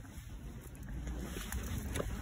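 Wind rumbling on a handheld phone microphone while walking, a steady low noise.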